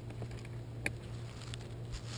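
Screwdriver turning a fin screw into a twin-tip kiteboard, heard as faint scattered clicks, one sharper about a second in.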